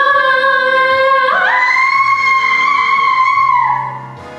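A boy's voice singing one long held note, leaping up to a much higher note a little over a second in and holding it until it falls away near the end.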